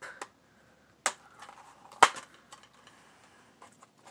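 A plastic DVD keep case being handled and opened: a sharp click about a second in, then a louder snap about two seconds in as the case comes open, with light plastic rustling and small ticks between.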